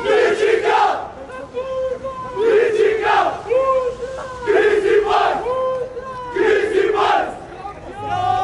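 Crowd of supporters chanting together in a repeating rhythmic phrase, many voices in unison, with sharp hits falling between the lines.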